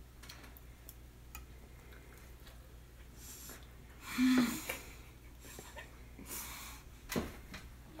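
A child eating at a table: faint fork clicks on a plate, a short vocal sound about four seconds in, and two sharp breathy huffs, as from a mouth burned on piping-hot pasta.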